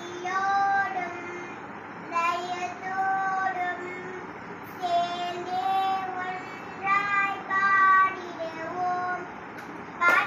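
A young girl singing in Carnatic style in raga Mayamalavagowla: five short phrases of held notes that bend slightly in pitch, with brief pauses between them.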